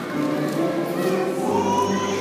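Church choir singing, several voices together, with one higher voice holding a note in the second half.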